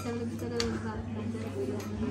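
Low voices of a small group at a table, one voice held on a long drawn-out note, with a single light click about half a second in.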